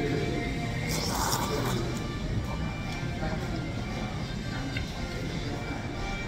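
Background music with indistinct voices and diner chatter, and a short slurp of noodles about a second in.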